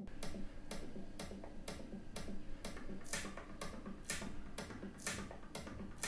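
A clock ticking steadily, about two ticks a second, over a low steady hum.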